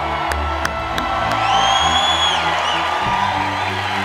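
A large audience cheering and whooping over music with a steady bass line. One long high whoop rises out of the crowd about a second and a half in and lasts about a second.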